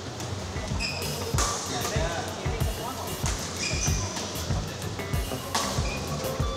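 Badminton rally on an indoor court: rackets strike the shuttlecock in sharp cracks several times, with brief shoe squeaks on the court floor and footfalls, in a reverberant hall. Music and voices run underneath.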